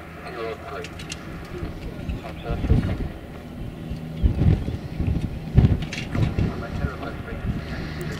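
Wind gusting hard on the microphone in irregular low rumbles, strongest from about two and a half seconds in, over a steady low hum from a jet airliner on final approach. A faint radio voice is heard in the first second.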